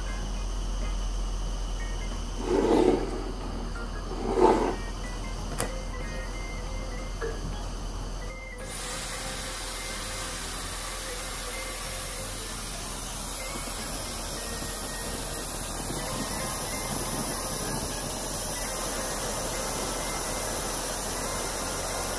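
A Dyson switched on about eight and a half seconds in, sending a steady rush of air across a gas single burner's low flame. Before that there is a low steady hiss and two short dull sounds.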